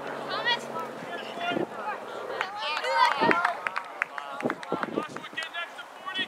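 Voices shouting and calling out across an outdoor soccer field during play, loudest about three seconds in. Several short, sharp knocks are mixed in.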